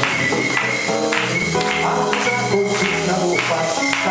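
Samba played live on an amplified acoustic guitar, with a steady percussive beat of about two strokes a second.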